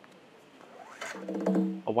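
UE Boom Bluetooth speaker's power-on sound, heard as its power button is pressed: a sudden onset about a second in, then a steady low tone held for under a second.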